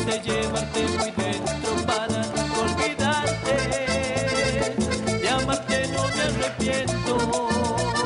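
A live Latin tropical dance band plays with a steady, quick beat: a male singer sings into a microphone over percussion on timbales, electric guitar and keyboard.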